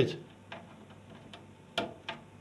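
Small sharp clicks of a screwdriver tip working a DIP switch on a gas boiler's control board, the loudest near the end. Beneath them runs a faint steady low hum.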